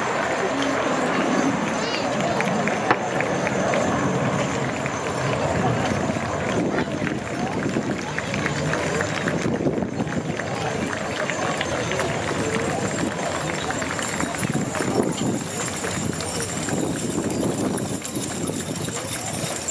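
Hoofbeats of a team of Belgian heavy draft horses trotting on turf, with the clinking of their harness, mixed with people's voices.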